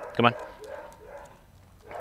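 Mostly a man's voice: a short spoken command, "come on", just after the start. The remaining second and a half holds only faint, soft sound with no loud event.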